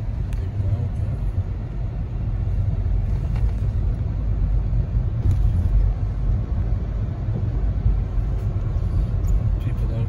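Steady low rumble of a car on the move, heard from inside the cabin: road and engine noise.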